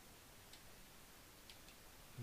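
A few faint computer keyboard keystrokes in near silence: one click about half a second in, then two close together near the end.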